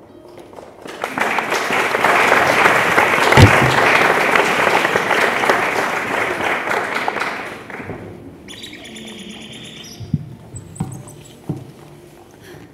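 Audience applause, rising about a second in and dying away after about six seconds. It is followed by a short run of high chirping, like birdsong, and a few soft thumps near the end.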